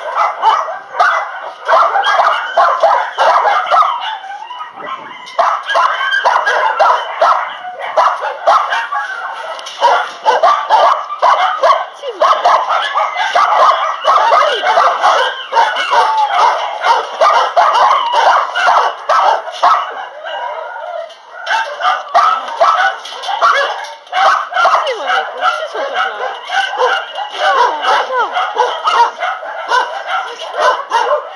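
Many kennelled shelter dogs barking and yipping at once in a dense, continuous chorus, easing briefly about four seconds in and again about twenty seconds in.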